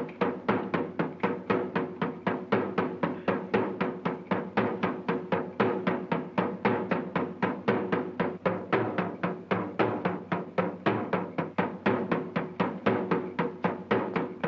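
Hand drums beaten in a fast, steady rhythm of about four strokes a second: ritual drumming meant to drive out an evil spirit.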